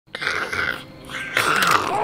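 A man growling like a zombie, twice, the second growl louder and longer.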